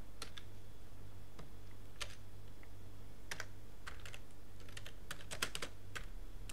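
Computer keyboard being typed on: a slow, irregular run of single keystrokes spelling out a short name, bunched closer together near the end, over a steady low hum.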